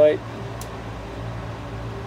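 Steady low hum of a mechanical fan, with one faint click about half a second in.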